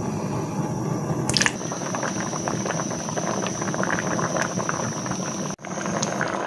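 Water with potato pieces boiling in a metal wok, a dense run of small bubbling pops over a faint steady high tone. A brief knock comes about a second and a half in, and the sound breaks off for a moment near the end before bubbling resumes at a harder boil.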